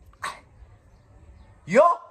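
A person's loud exclaimed "Yo!" near the end, rising in pitch, in exasperation.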